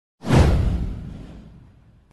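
An intro whoosh sound effect with a deep low boom: it swells suddenly about a fifth of a second in, then fades away over about a second and a half.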